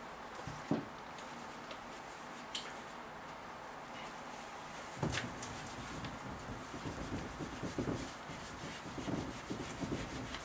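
Whiteboard eraser rubbing across the board in short, irregular scrubbing strokes, starting about halfway through. Two light knocks come before it.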